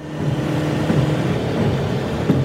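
Car driving, engine and road noise heard from inside the cabin as a steady low hum over a wash of noise.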